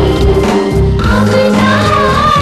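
Hindi film song playing: orchestral music with voices singing together in the manner of a chorus.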